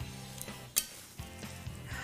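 Metal salad servers tossing greens in a large glass bowl: soft rustling of leaves, with one sharp clink of the servers on the bowl just under a second in.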